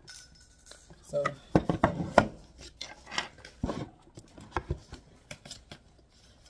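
Handling noise from a cardboard savings box being picked up and moved about: an irregular string of knocks, taps and rubbing, loudest about two seconds in.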